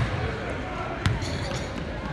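A basketball bounced on a hardwood gym floor by a player at the free-throw line before the shot: two bounces about a second apart.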